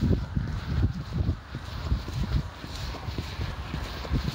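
Wind rumbling on a handheld camera's microphone, with irregular low thuds of footsteps on stone paving as the person carrying it walks along.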